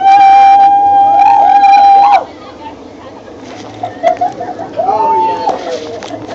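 A person holding one loud, high-pitched scream for about two seconds while other voices squeal and laugh over it. A shorter high squeal follows near the end.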